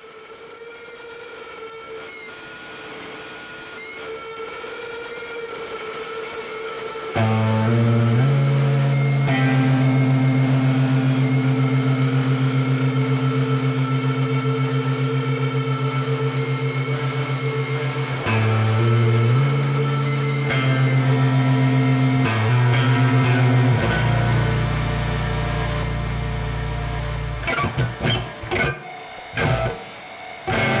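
Sludge/post-metal music: a piece fades in on a swelling, held drone, then heavy, low sustained chords crash in about seven seconds in and ring out, shifting a few times. Near the end it breaks into stop-start hits.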